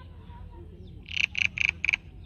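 An animal calling four quick, loud, evenly spaced notes, about four a second, starting about a second in, over a low steady hum.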